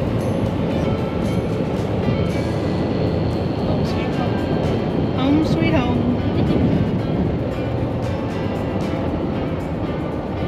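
Steady road and engine noise inside a 2015 Toyota Tacoma pickup's cab at highway speed while towing a small travel trailer, with music playing underneath.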